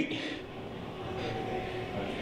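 Pause in speech: steady background room noise, with a faint steady hum about a second in.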